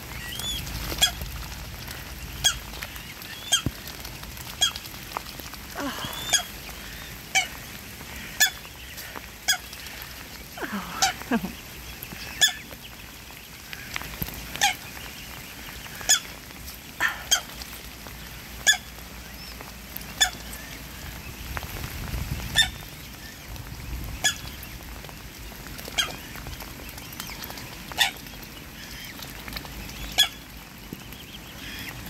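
Mute swans and their grey cygnets feeding at the water's edge, with a few short curved calls from the birds. Over this runs a series of sharp, irregular clicks, about one a second, which are the loudest sounds.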